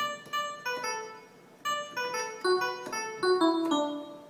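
Single notes played in a quick melodic phrase on a keyboard with a piano-like voice, part of a Mohana raga melody; the line steps down in pitch near the end.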